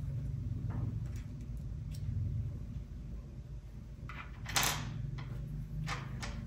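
Board game pieces being handled and set down on a table: a few light clicks and one louder clatter about four and a half seconds in, over a steady low hum.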